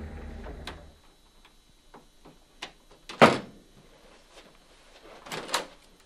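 Interior door being handled: a few scattered clicks and knocks, the loudest a single thud about three seconds in and another cluster near the end. Background music fades out in the first second.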